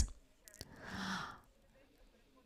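A person's soft, breathy sigh lasting about half a second, about a second in, after two faint clicks.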